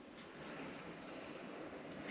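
Faint, even scratching of a pen on paper as it traces along the edge of a guitar body mold.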